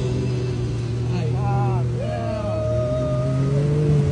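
Side-by-side UTV engine running with a steady low drone through river water, its pitch rising slightly toward the end. Over it, from about halfway, a voice with gliding and then long held notes.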